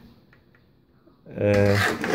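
Quiet room tone with a couple of faint ticks for the first second, then a man starts speaking in Polish.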